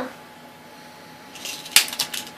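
Low background hiss, then a brief rustle and a single sharp click near the end, followed by a few fainter clicks.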